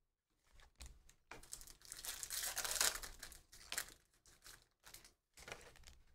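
Foil trading-card pack wrapper torn open and crinkled, a faint rustle over a couple of seconds, followed by a few light ticks of cards being handled.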